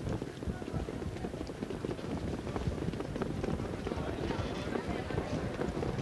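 Hoofbeats of a field of harness trotters moving up behind the starting gate, a dense, uneven low patter, with a faint murmur of voices.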